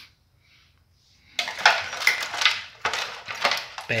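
Loose hardware and wiring being handled in a plastic crate, giving a clatter of hard parts knocking and rattling together. It starts suddenly about a second and a half in, with several sharp knocks close together near the end.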